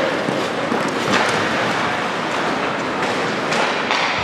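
Ice rink noise during hockey play: a steady hiss with a few sharp clacks and knocks, such as sticks, puck and skates on the ice and boards.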